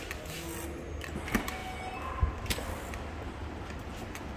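Door hardware being worked: a key card held to an electronic door lock, then the handle and latch clicking a few times, with a dull thump as the door swings open, over a steady low hum.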